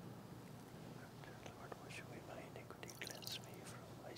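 Faint splashing of water poured from a glass pitcher over the priest's hands into a bowl at the altar, the lavabo washing, with a quiet whispered prayer. The sounds are soft and scattered, mostly in the second half.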